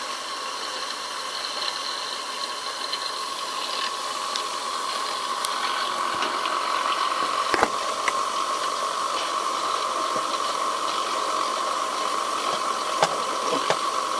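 Small 1930s brass steam turbine running on steam at about 55 psi: a steady whirring hiss that builds a little over the first few seconds. There is a sharp click about halfway through and a couple more near the end.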